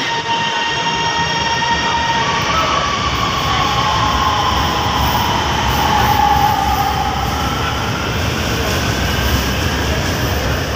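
Orange Line metro train pulling out of the station past the platform screen doors: a steady rumble of the moving train, with a whine that slides down in pitch from about two and a half seconds in until past the middle.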